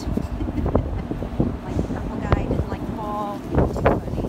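Wind rumbling on the microphone, with scattered brief knocks and a few short pitched sounds, two of them in the second half.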